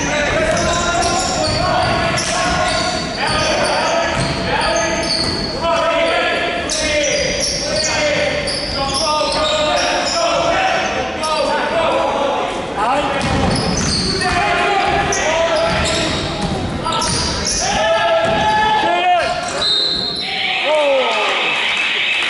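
Basketball being dribbled on a hardwood court in a large, echoing hall, with sneakers squeaking and players and spectators calling out. A steady high tone starts near the end.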